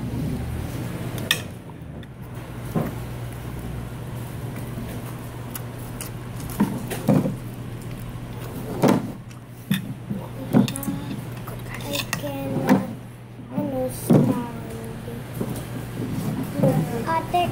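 Fork and spoon clinking and scraping against a plate as rice and sausages are eaten, about a dozen scattered clinks. A steady low hum runs underneath.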